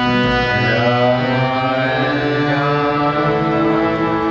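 Harmonium holding a steady chord while a man sings a devotional kirtan chant over it, his voice gliding between notes.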